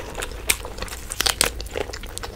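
Close-miked eating sounds of rice and curry eaten by hand: wet chewing and mouth sounds with a string of sharp, irregular clicks, the loudest about half a second in.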